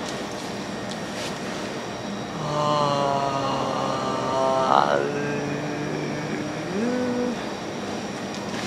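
A young man's voice holds a long, drawn-out hesitation sound on one pitch for a couple of seconds, breaking upward at its end; a second short rising vocal sound follows near the end. All of it sits over a steady background hiss of room noise.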